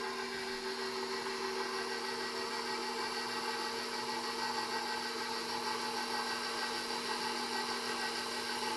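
KitchenAid bowl-lift stand mixer running at low speed with the dough hook turning through flour: a steady motor hum with a few fixed tones.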